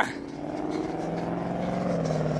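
Ford Mustang's engine as the car drives away across the lot: a steady droning note, its pitch sinking slightly.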